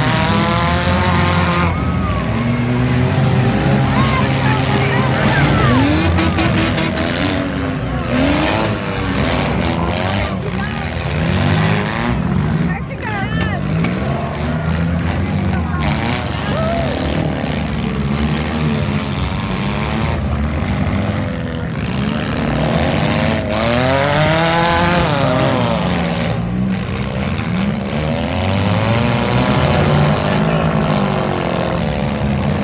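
Several gutted compact demolition-derby cars running at once, their engines revving up and down over and over, with occasional crashes as the cars ram each other.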